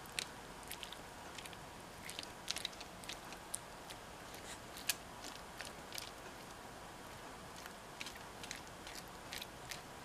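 A metal spoon and knife scraping and cutting soft baked pumpkin flesh in a foil-lined pan: scattered faint clicks and light scrapes at irregular intervals.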